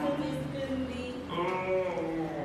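A voice making drawn-out, pitched sounds with no clear words. A second one rises and falls in pitch in the latter half.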